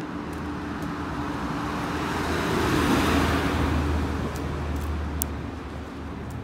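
A car passing: road noise and a low engine hum swell to their loudest about halfway through, then fade.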